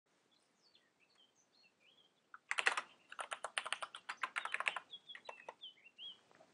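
Typing on a computer keyboard: a quick, uneven run of keystrokes starting about two and a half seconds in and lasting about three seconds.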